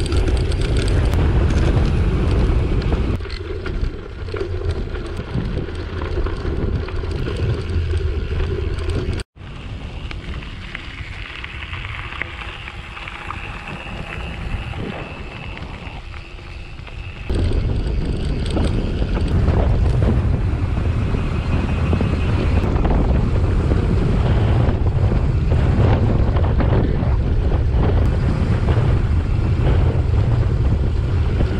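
Wind buffeting an action camera's microphone while a gravel bike rolls along a dirt road. It is a steady rushing noise that drops a few seconds in, breaks off in a short silence at about nine seconds, and comes back louder later on.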